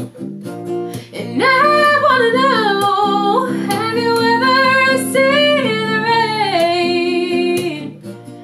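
A woman singing to a strummed acoustic guitar. The voice comes in about a second in with long, sliding held notes and stops shortly before the end while the guitar keeps going.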